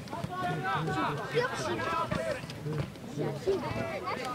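Several voices shouting and calling out at once, overlapping, with two sharp knocks, one about a second and a half in and one near the end.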